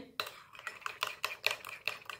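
Spoon stirring a mug-cake batter of egg, oil and sugar in a ceramic mug, clinking and scraping against the mug's sides and bottom in quick, irregular taps, about five or six a second.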